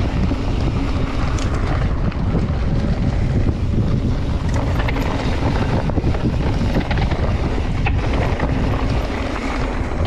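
Mountain bike descending a dry dirt singletrack at speed: wind buffeting the bike-mounted camera's microphone over the rumble of knobby tyres on dirt, with a few sharp rattles and clicks from the bike.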